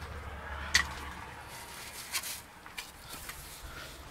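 Handling sounds as thin metal cut-off discs are picked up by hand: a sharp click about a second in, then soft rustling and a few faint clicks.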